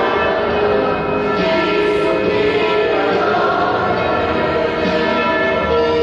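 Church bells ringing, many overlapping tones that hang on and blend, with fresh strikes every few seconds.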